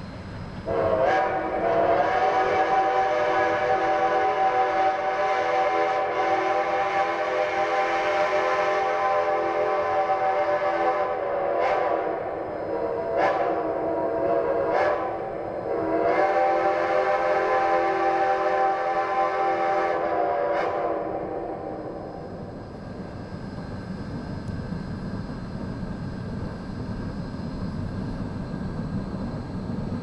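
Steam locomotive whistles sounding a long, loud blast of about ten seconds, then several short toots, then another long blast that ends about 22 seconds in. After that comes the lower, steady rumble of the locomotives working as they approach.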